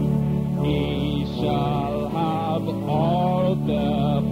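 A hymn being sung: one wavering melody line, phrased every second or so, over a steady sustained accompaniment of low held tones.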